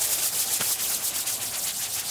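Tear gas canister hissing as it spews smoke onto the street: a loud, steady, rough hiss with a fast flutter in it.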